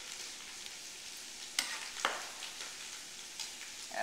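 Chopped vegetables sizzling in a hot pot with cooked chorizo: a steady frying hiss, with two sharp clicks a little over a second and a half in and again about two seconds in.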